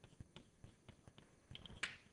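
Chalk writing on a blackboard: a run of short, irregular taps and clicks, with one louder, sharper stroke near the end.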